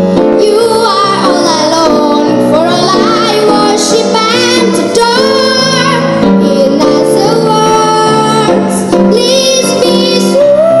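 A young girl singing a jazz song into a handheld microphone, with piano accompaniment.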